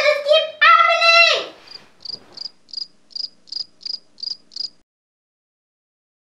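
A girl's voice calls out for a moment, then a cricket chirps in short, high, evenly spaced chirps, about three a second, nine in all. The chirping cuts off suddenly near the end.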